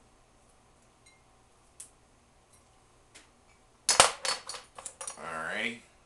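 Small hard objects handled on a table: a couple of faint ticks, then about four seconds in a quick run of sharp clicks and knocks, followed near the end by a short sound that rises in pitch.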